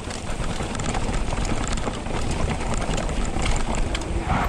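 Mountain bike rolling fast down a rocky dirt singletrack: tyres crunching over loose stones, with the frame and chain rattling and clattering over the bumps. Wind rushes steadily on the microphone.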